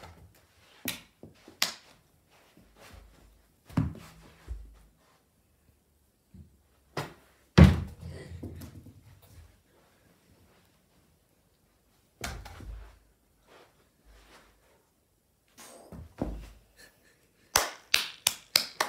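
Scattered thumps and knocks with quiet gaps between them, the loudest a heavy thump about seven and a half seconds in.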